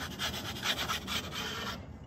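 Wooden pizza peel scraping on a pizza stone, worked back and forth in quick short strokes to slide a pizza off. The scraping stops near the end.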